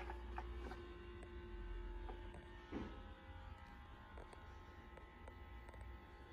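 Faint handling noise: a few light clicks and one soft knock a little under three seconds in, over a steady low hum and a faint steady tone that stops about halfway through.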